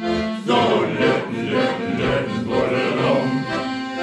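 Piano accordion playing a sea-shanty tune.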